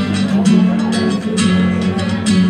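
Acoustic guitar strumming chords in a steady rhythm, about two strokes a second.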